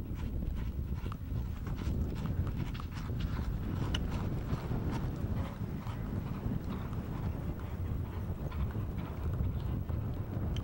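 Polo ponies galloping on turf: quick, irregular hoofbeats over a steady low rumble.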